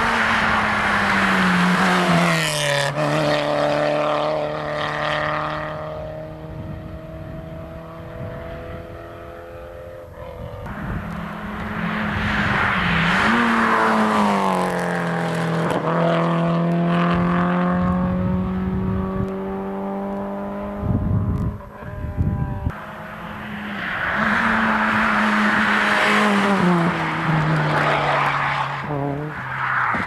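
Three small front-wheel-drive rally cars, among them a Peugeot 205 GTI and a Renault Clio, pass one after another with engines at high revs. Each engine note rises as the car nears and drops in pitch as it goes by.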